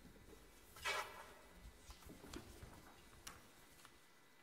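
Quiet hall after the music has stopped: low room tone with a few faint clicks and knocks, and one brief louder pitched sound about a second in.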